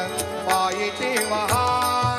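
A man singing a devotional Marathi folk song into a microphone, his voice gliding between held notes, over a low drone and a steady beat of sharp percussion strikes.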